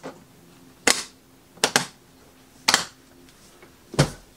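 The press-and-pull latches of a Pelican 1606 hard case being snapped shut one after another: a sharp snap about a second in, two in quick succession shortly after, another near three seconds, and a last one at the end.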